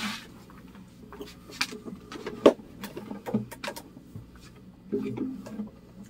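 Handling noise from an acoustic guitar being strapped on and a player sitting down: a string of irregular clicks, knocks and rubs, the loudest about halfway through.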